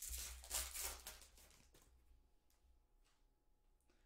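Foil card-pack wrapper crinkling as it is torn open: a burst of rustling in the first second or so that fades away, followed by a few faint rustles of the cards being handled.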